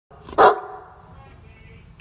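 A Great Dane barks once, loud and short, about half a second in.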